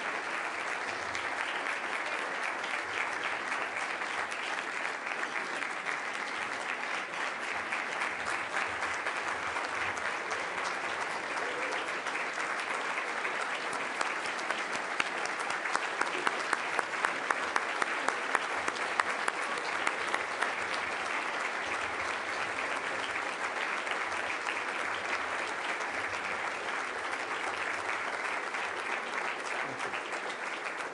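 Audience applauding steadily. Through the middle, one clapper close by stands out louder, about two to three claps a second.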